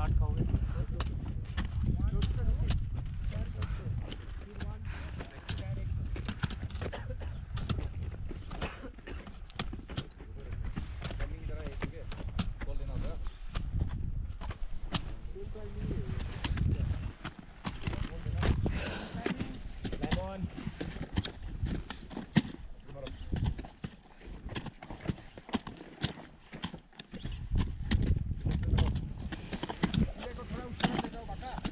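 Crampon-shod boots kicking and crunching into hard snow during a steep climb, a run of irregular sharp crunches and clicks. Wind rumbles on the microphone underneath.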